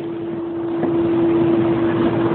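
A steady, even hum over a hissing background noise.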